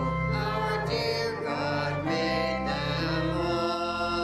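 Small vocal group singing a hymn in parts over sustained pipe organ chords, settling on a long held chord near the end.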